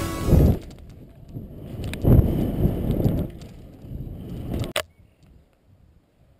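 Mountain-bike ride over dirt jumps heard through a helmet-mounted GoPro: rough rumbling of wind and tyres on packed dirt, heaviest briefly about half a second in and again from about two seconds to three. It ends with a sharp click near five seconds.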